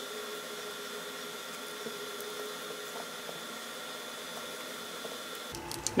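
Faint steady room tone: an even hiss with a thin electrical hum and a few barely audible ticks, with no distinct sound event.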